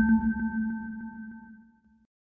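A ringing electronic tone from a video title-card sound effect: several steady pitches struck together, fading away over about two seconds.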